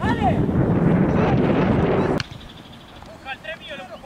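Wind buffeting the camera microphone with a shouted call at the start, cut off abruptly a little over two seconds in; after that, faint distant shouts of players.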